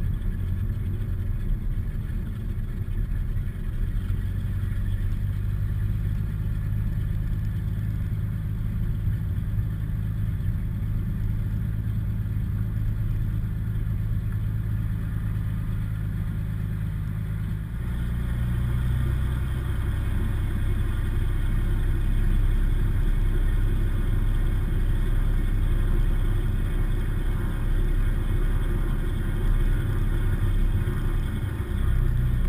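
Cirrus SR20's piston engine and propeller heard from inside the cabin, running steadily at low power while taxiing. About eighteen seconds in the engine speed rises and it runs louder and higher-pitched from then on.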